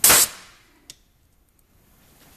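Pneumatic ring marking machine firing: one sharp hammer blow of a steel letter stamp into a stainless steel ring, with a rush of air, fading within about half a second. A small click follows about a second in.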